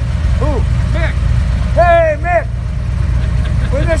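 Motorcycle engine idling, a loud steady low rumble, with a man's voice speaking in short bursts over it.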